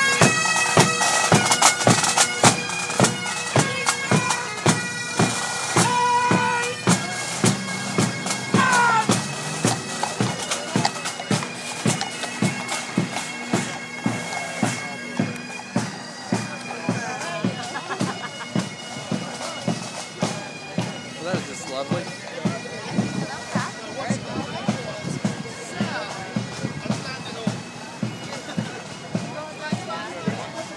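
A Guards military marching band playing as it marches past, with sustained pipe-like tones over a steady marching drumbeat of about two beats a second. It is loudest at first and grows fainter as the band moves away.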